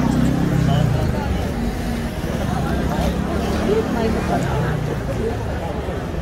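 Crowd babble on a busy street: many voices talking at once, none clear, over a steady low rumble of traffic.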